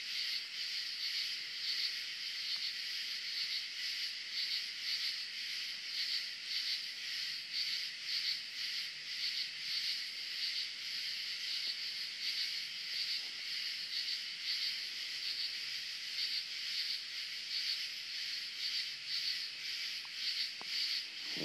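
A chorus of night insects: a steady, high-pitched, evenly pulsing trill.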